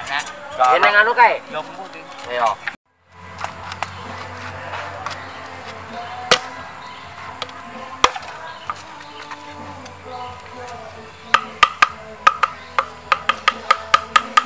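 Background music, with a few single sharp knocks. In the last few seconds comes a quick run of sharp knocks, about four a second: a machete chopping bamboo slats.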